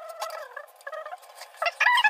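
A high, wavering melodic line, like a tune, gets much louder near the end. Under it are light clicks and knocks of hands kneading atta dough in a steel pan.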